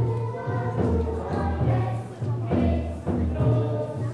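Music with a group of voices singing held notes over a steady low beat.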